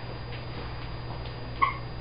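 A dog gives one short, high whimper about one and a half seconds in, over a steady low hum.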